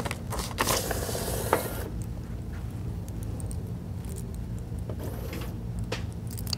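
A paper ballot being fed into a DS200 ballot scanner: a few handling clicks and a short rush of paper-feed noise about a second in, then a low steady hum with a few light clicks near the end.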